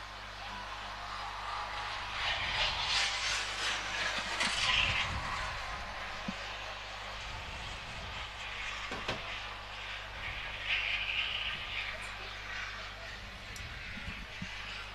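Trackside sound during a greyhound race: a noisy rush that swells up about two seconds in and again near eleven seconds, with voices in the background.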